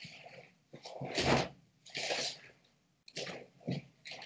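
A person's short, forceful breaths, about four noisy bursts with the loudest a little over a second in, from a karateka exerting himself through kata movements. The sound comes through a video-call microphone that cuts to silence between the breaths.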